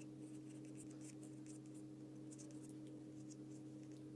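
Pencil scratching on paper in faint, quick, irregular strokes as clouds are sketched, over a steady low hum.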